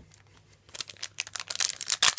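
Foil booster-pack wrapper crinkling and tearing as hands work it open. The sound starts about two-thirds of a second in as a quick patter of crackles and grows denser.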